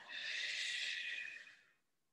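A woman's long audible exhale, lasting about a second and a half and fading out, breathed out with the opening movement of a side-lying chest rotation stretch.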